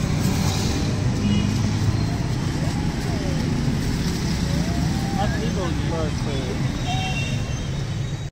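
Steady, loud din of street traffic and vehicle engines, with voices calling in the background through the middle of the shot.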